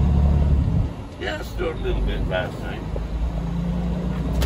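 Semi-truck diesel engine running at low speed, a steady low drone heard from inside the cab, strongest in the first second and again near the end. A brief stretch of voice comes in the middle.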